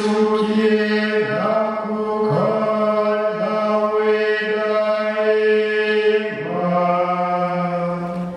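Male voices chanting a prayer of blessing on long held notes that step to a new pitch every second or so, with one note held for about three seconds and a lower note near the end. The chant comes through handheld microphones.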